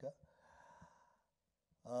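A man's soft breath out into a handheld microphone, a faint sigh-like exhale lasting about a second, between spoken words.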